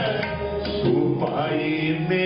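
Sikh kirtan: a male voice singing a Gurbani hymn in a gliding devotional style, accompanied by tabla strokes and bowed, fretted string instruments.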